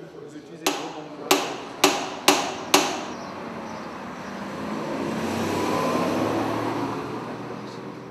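Five quick hand-hammer blows on metal over a metalworker's stake, about half a second apart, each ringing briefly. They are followed by a broad rush of noise that swells and fades over several seconds.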